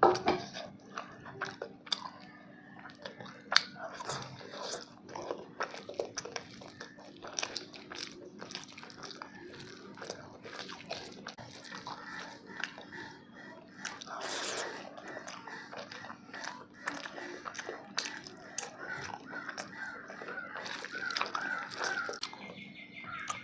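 Close-miked eating by hand: chewing and lip smacking on a mouthful of rice, fish and curry, with many small wet clicks, while rice is squished together with gravy by hand on the banana leaf. A crow caws near the end.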